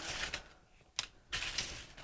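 Hand scooping loose powdered spice mixture from an aluminium foil pan and pressing it onto a candle: soft gritty rustling in two short spells, with a single sharp tap about a second in.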